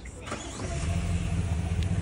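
A car's power window motor runs with a steady hum as the rear side window glass rises.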